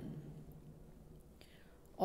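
A short pause in a woman's speech: faint room noise, with a soft intake of breath near the end before she speaks again.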